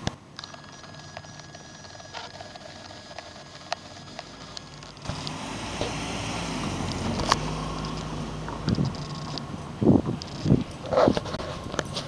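Outdoor street ambience: a car passing, swelling to its loudest about seven seconds in, with a few knocks from handling of the camera near the end.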